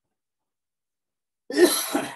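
A person coughing once, a single sharp burst about one and a half seconds in.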